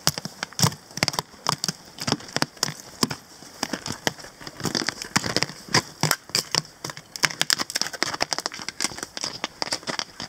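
Footsteps crunching on packed snow in boots fitted with ice creepers: a quick, uneven run of sharp crunches, a few each second.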